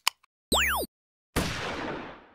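Title-card sound effects: a short electronic sweep with tones gliding down and up across each other, then, after a half-second gap, a sudden noisy hit that fades away over about a second.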